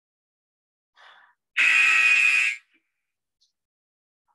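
An electronic workout-timer buzzer sounding once, a loud buzzing tone of about a second that cuts off sharply, marking the end of an exercise round.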